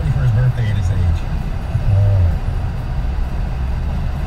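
A man talking over the car's radio speakers, heard inside the moving car's cabin over steady road rumble.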